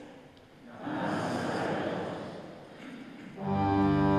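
A large congregation answering in unison, heard as a blurred murmur in the reverberant church. About three and a half seconds in, a church organ begins playing sustained chords.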